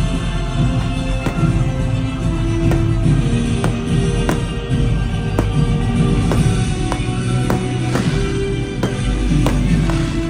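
Loud show music with a heavy, steady low end, and fireworks going off over it: many sharp pops and crackles at irregular intervals, several a second at times.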